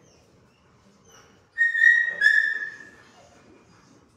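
A dog whining: two high, steady whines in quick succession about one and a half seconds in, the second falling slightly in pitch.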